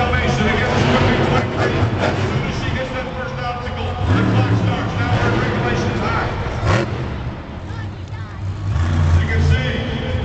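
Monster truck's supercharged V8 revving up and down, with a sharp rise in revs about two-thirds of the way through, as the truck climbs over crushed cars. A voice over the arena loudspeakers runs underneath.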